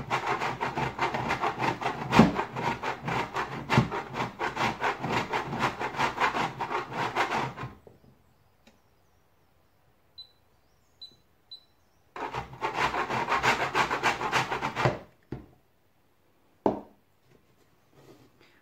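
Candle wax being grated on a metal box grater: a fast run of rasping strokes for about eight seconds, a pause, then a second shorter run of about three seconds. A single knock comes near the end.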